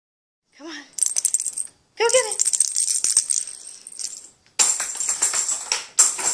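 A small bell jingling and rattling in quick runs, as if shaken with movement, with two short calls that rise and fall near the start, likely the cat calling.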